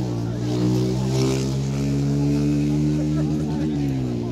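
A motor engine running steadily at an even pitch, rising slightly and then dropping back near the end, with crowd voices murmuring underneath.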